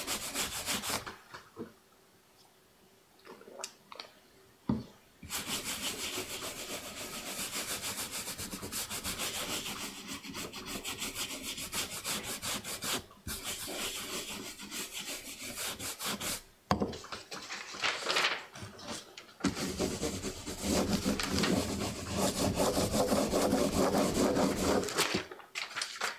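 A round printing brush scrubbed rapidly back and forth over a carved wooden printing block, spreading black pigment across it, in long scratchy stretches with a short pause and a sharp tap early on. Near the end comes a fuller, deeper rubbing as the paper laid on the block is rubbed down with a baren to take the first impression.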